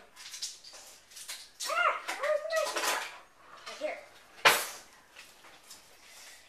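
A child's wordless voice rising and falling about two seconds in, then one sharp clatter of a kitchen utensil about four and a half seconds in, the loudest sound here.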